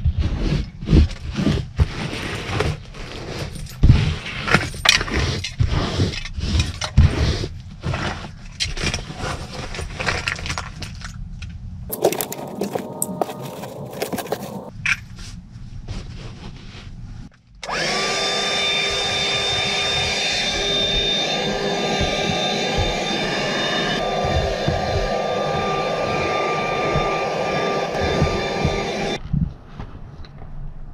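Hand clean-up of a car's floor carpet: a run of scrapes, knocks and rustles as loose debris is picked out. A bit past halfway, a small vacuum motor switches on suddenly and runs with a steady whine, then cuts off near the end.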